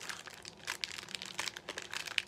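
Crinkling of a vinyl record's sleeve as the album is handled, a run of irregular light crackles and ticks.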